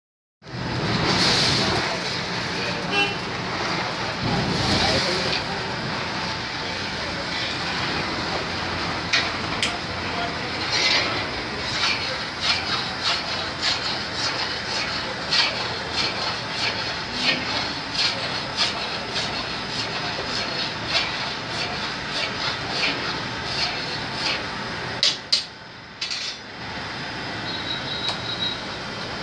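Steady running noise of fuel-fed milk-boiling stoves and their feed machinery, with many sharp metallic clicks and clinks from about nine seconds in. Near the end it briefly drops, with two loud clicks.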